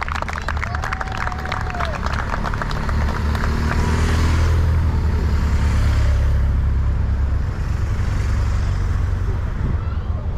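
Roadside spectators clapping as racing cyclists pass, then a race motorcycle and team cars carrying spare bikes on roof racks drive by, their engines and tyres building to their loudest about five seconds in.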